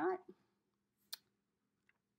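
A single sharp click about a second in, from a pen in hand as it is readied to draw, with a faint tick near the end.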